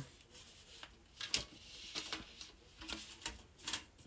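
Faint handling noise as a case is lifted out of an open metal steelbook and set down on a bedsheet: soft rubbing and rustling with a handful of light clicks and taps, the sharpest about a second and a half in.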